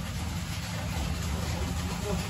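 A motor running steadily, a low even hum with no change in pitch.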